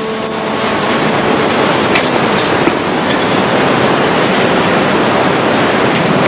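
Audience applauding, a dense steady wash of clapping that builds over the first second and then holds.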